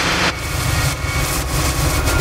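Cinematic logo-sting sound effect: a deep rumble with sweeping whooshes, building in loudness.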